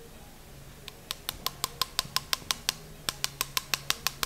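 Rapid, regular sharp clicking, about six clicks a second, starting about a second in, as the rotating disc shaver is worked inside the L5-S1 disc space. A low steady hum of operating-room equipment runs underneath.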